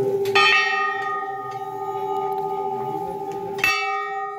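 Metal temple bells ringing: one is struck sharply twice, a few seconds apart, and each stroke rings on in long clear tones over the hum of bells still sounding from earlier strokes.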